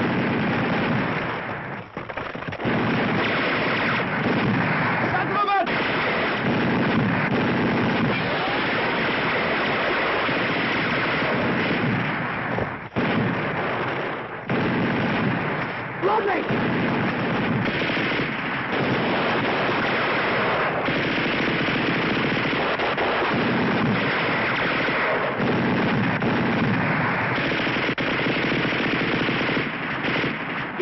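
Battle sound effects from a 1960s TV war drama: continuous machine-gun and rifle fire, dense and nearly unbroken except for a few brief lulls.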